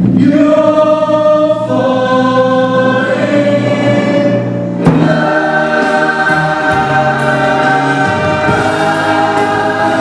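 A stage chorus singing long held notes over a live rock band, the chord changing a few times, with a sharp band accent about five seconds in leading into a new sustained chord.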